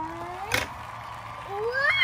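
A voice drawing out a long exclaimed 'wow': held on one pitch, then sliding up steeply near the end. A single short, sharp click comes about half a second in.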